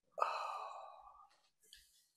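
A man's audible breath out, a sigh into the microphone, coming a fraction of a second in and fading away over about a second.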